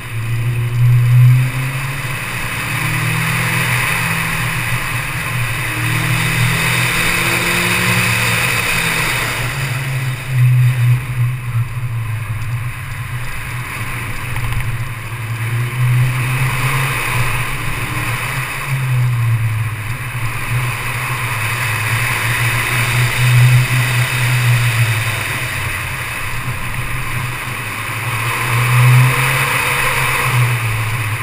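Car engine revving up and falling back again and again as the car accelerates and slows between cones on an autocross course, with the sharpest surges about a second in, around ten seconds in and near the end. A steady rush of wind and road noise lies underneath, picked up by a microphone mounted on the hood.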